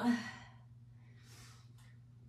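A woman's strained "oh" trails off at the start, then a faint breath follows after about a second, the hard breathing of effort during a knee push-up.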